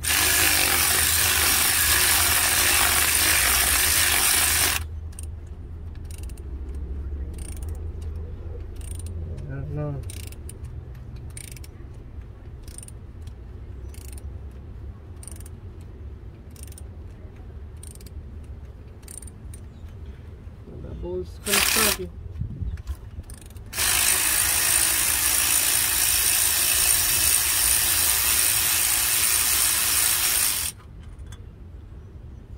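Ratchet working the 10 mm bolts of the water pump on a Chevy 5.3 L V8. It runs loud and steady for about five seconds. Then it drops to a quieter stretch with light clicks about once a second and a brief louder burst, and runs loud and steady again from about 24 seconds to the end.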